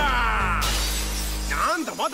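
Film trailer mix: a man's shout falling in pitch, then a shattering crash effect lasting about a second over a steady low music drone. A voice comes in near the end.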